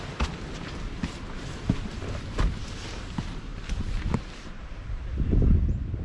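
Footsteps walking along an outdoor path, irregular steps over wind noise, with a louder low wind rumble on the microphone about five seconds in.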